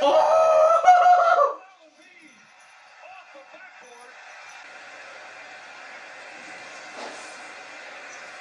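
A loud shout lasting about a second and a half, far louder than the TV sound, from someone reacting to a dunk. After it cuts off, the arena crowd on the TV broadcast carries on at a much lower level.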